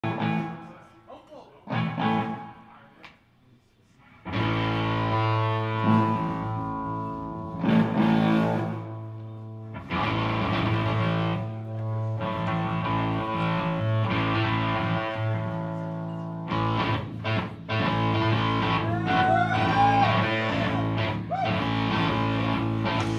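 Live rock band led by distorted electric guitars playing sustained ringing chords, with bent notes near the end. A few short strums and a near-silent pause open it, and the full band comes in about four seconds in.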